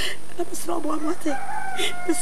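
A rooster crowing once, a long held call starting near the end, with short bits of a person's voice before it.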